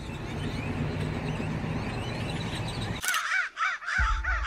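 A gathered flock of black birds calling over one another in a dense, overlapping chatter. About three seconds in, this changes abruptly to a single bird's run of repeated rising-and-falling calls, several a second.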